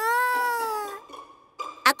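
A child's voice holding a long open-mouthed "aaah" for a mouth check, its pitch dipping and then rising again before it stops about a second in.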